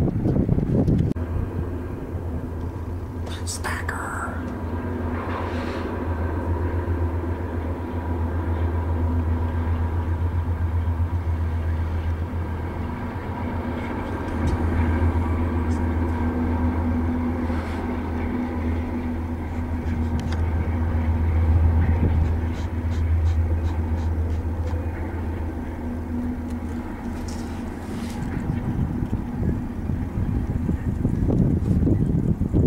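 GE C44-9W diesel locomotives of a double-stack container train passing, their 16-cylinder GE FDL engines making a steady low drone that is loudest in the middle of the stretch. Faint scattered clicks come from the cars' wheels over the rails.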